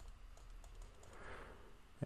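Faint taps and light scratching of a stylus writing on a tablet screen, over low room tone.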